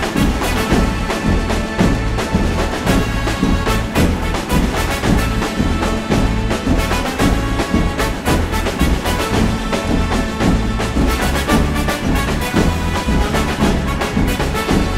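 Live instrumental music from a band (drum kit, bass, guitars) joined by a marching drum corps of snare and bass drums, playing a loud, driving passage. Dense, even drum strikes run over a stepping bass line.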